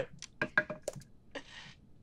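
Dice rolled on the table: a scatter of light clicks and clacks in the first second, then a short hiss about a second and a half in.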